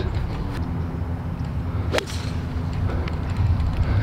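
A golf club striking a golf ball once, a single sharp crack about halfway through, over a steady low hum.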